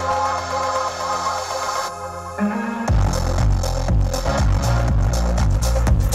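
Electronic dance track playing through a car stereo with a Skar SDR-12 12-inch subwoofer, inside the cabin. A synth melody runs over a held bass note, then about three seconds in a heavy bass line and beat drop in.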